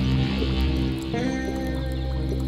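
Background music with sustained low notes; a sliding note rises about a second in.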